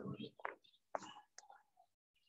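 Quiet speech over an open microphone, trailing off about half a second in, followed by a few soft clicks and faint murmurs.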